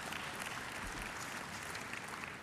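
Faint, steady applause from a large seated audience.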